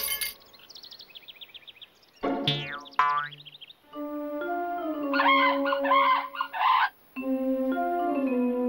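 Cartoon soundtrack: faint bird-like chirps at first, then a couple of quick falling-pitch sound effects about two and a half seconds in, then light music with held notes and mallet-like tones from about four seconds.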